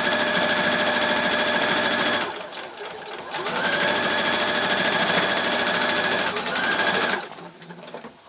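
Electric sewing machine stitching a straight seam at a steady speed, stopping after about two seconds, then starting again with its motor whine rising as it speeds up. It runs a few seconds more, gives one short final burst and stops near the end, followed by a few light clicks.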